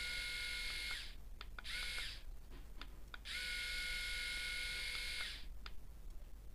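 Xiaomi Mijia S300 three-head rotary electric shaver being switched on and off with its button. Its motor runs with a steady whine until about a second in, again briefly around two seconds, then for about two seconds from a little past three seconds, with short clicks in between.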